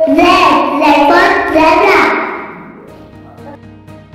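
A child's voice singing loudly over background music for about two seconds, then fading out and leaving the music, with a light, steady beat, playing on its own.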